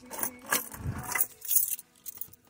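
Handling noise: an irregular run of short rustles and clinks as the phone is carried about, going briefly quiet just before the end.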